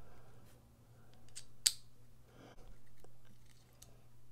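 Faint handling of a titanium folding knife and its small screws during reassembly: a few light metallic clicks and taps, the sharpest about one and a half seconds in, with soft rubbing between them.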